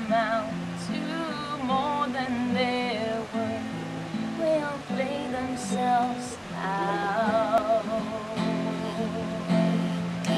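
A woman singing a slow ballad with vibrato, accompanied by a strummed acoustic guitar.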